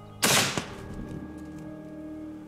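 A single hunting-rifle shot: one sharp, loud crack about a quarter second in that rings out for about half a second, with a fainter knock about a third of a second later. It is the shot that drops the roebuck.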